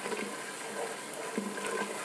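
Onion, garlic and ginger paste sizzling steadily in oil in an electric pressure cooker's inner pot, with a couple of light scrapes from the spatula stirring it.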